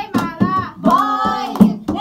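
A group of voices singing together to steady, rhythmic hand clapping.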